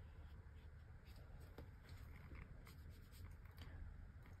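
Faint soft scratching of a watercolour brush stroking hot-press cotton paper, then a few light ticks as the brush works in the paint palette in the second half, over a low steady room hum.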